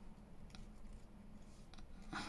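Scissors snipping card stock: two faint snips, about half a second in and near the end, over a low steady hum.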